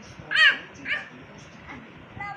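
An animal calling twice: two short, loud calls about half a second apart, the first one louder.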